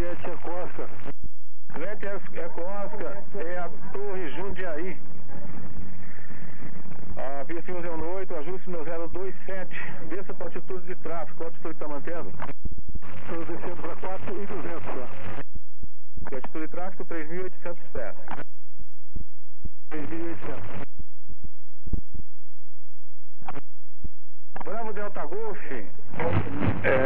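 Radio voice traffic between pilots and the control tower heard over the aircraft intercom, thin and cut off above the mid-range, in a string of transmissions with short silent gaps between them.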